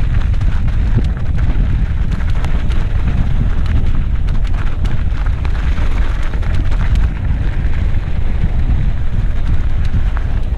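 Wind buffeting the camera microphone over the crackle and rattle of a mountain bike rolling down loose, rocky dirt singletrack, with many small clicks and knocks from tyres and bike on the stones.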